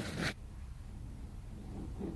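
Brief raspy scrape of a mountain unicycle's knobby tyre skidding on the dirt trail, cutting off about a third of a second in, followed by faint steady outdoor background noise.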